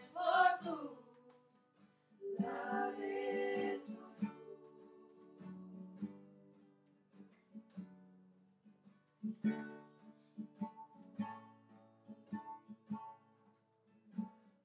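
Voices sing two short phrases near the start, the second a held chord of about a second and a half. Then an acoustic guitar plays alone, picked single notes and chords ringing out, busier in the last few seconds.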